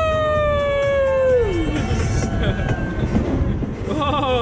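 Fairground music with one long hooting, whistle-like tone that holds and slides slowly down in pitch, then drops away about a second and a half in.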